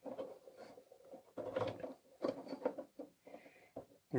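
Small irregular clicks, knocks and scrapes of a monitor's rear connector panel being handled and pressed into place on its chassis, loudest in the middle.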